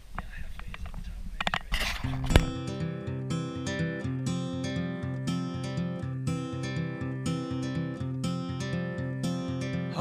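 Acoustic guitar picking a steady, repeating pattern as a song's intro, starting about two seconds in after a brief low outdoor rumble with a few faint knocks.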